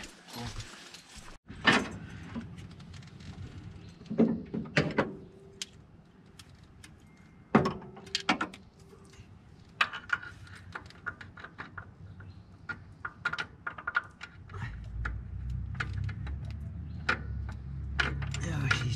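Hand tools clicking and clinking against metal parts in a truck's engine bay, an uneven run of small clicks with a few louder knocks. A low hum comes up in the last few seconds.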